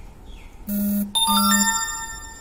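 A bell rings once, sharp and metallic, its ring fading over most of a second, just after a short low buzzing tone.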